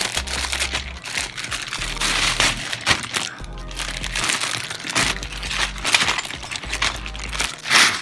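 Background music with a steady bass line, over the crinkling and rustling of a plastic bag being handled as a new tripod is unwrapped, loudest in short bursts around two seconds in and near the end.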